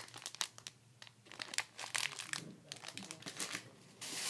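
Plastic packaging crinkling in the hands: packs of rubber loom bands and a plastic shopping bag being handled, an irregular run of crackles that grows busier after the first second or so.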